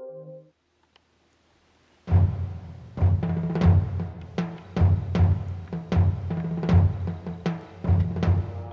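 Background music: a soft ambient tune with held notes ends about half a second in, and after a short silence a dramatic score of heavy, timpani-like drum hits over a low bass starts about two seconds in and carries on.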